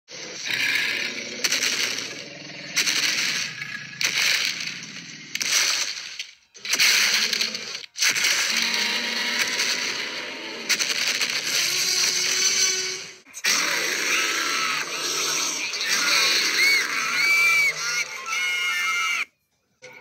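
A loud, choppy edited soundtrack of music and sound effects, cut off and restarted abruptly every second or two, with short gliding squeaky tones near the end.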